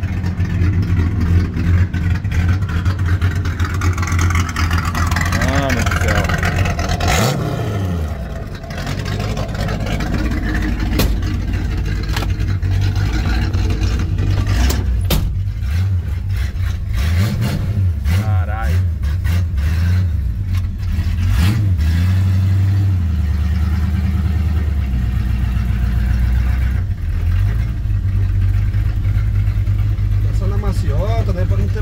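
Ford Maverick's V8 engine idling with a steady, deep low rumble, heard from behind the car and then from inside the cabin. A sharp knock about seven seconds in and a few more around fifteen seconds cut across it.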